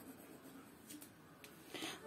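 Near silence with faint pencil strokes scratching on drawing paper and a couple of tiny ticks, then a short hiss near the end.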